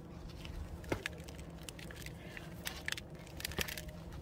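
Gloved hands handling the packed, root-bound root ball of a marguerite daisy: soil crumbling and roots rustling in scattered crackles, with a few sharper clicks about a second in and near the end.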